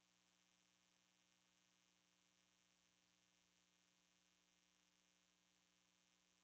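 Near silence: a faint, steady electrical hum with hiss, unchanging throughout.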